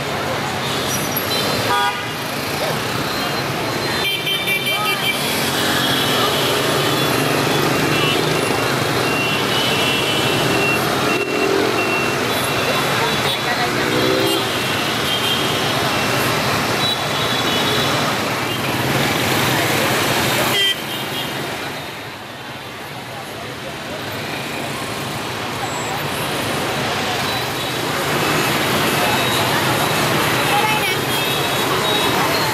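Busy street traffic, mostly motorbikes and scooters with some cars, running steadily, with horns tooting now and then and people's voices mixed in. The noise drops suddenly about two-thirds of the way through, then builds back up.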